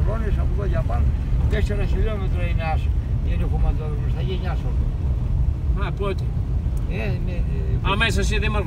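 Car driving on an unpaved gravel road, heard from inside the cabin: a steady low rumble of engine and tyres, with a man's voice talking over it on and off.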